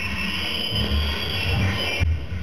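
Electronic noise from a circuit-bent sound sculpture sounding through a horn loudspeaker and subwoofer: a dense wash of hiss and buzz with uneven low bass throbs.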